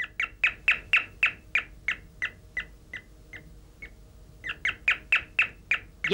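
Electronic doorbell playing a bird-chirp tune: a quick run of sharp chirps, about three a second, that thins out and breaks off briefly about two-thirds of the way through, then starts again.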